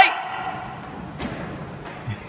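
Reverberant room noise of a large gym hall as a shouted command dies away, with one faint knock a little over a second in.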